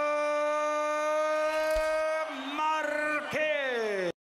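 Ring announcer drawing out the winner's surname, Márquez, in one long, high held call of nearly three seconds, then two shorter held calls, the last falling in pitch and cut off at the end.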